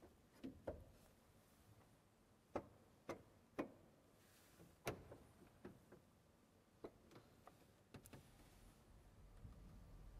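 Stop tabs on the console of a 1917 Eskil Lundén pipe organ being set one by one: about ten faint, separate clicks at uneven intervals as the registration is chosen before playing. A low rumble comes up near the end.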